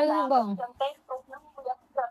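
A woman laughing: one loud cry falling in pitch, then a quick run of short voiced bursts.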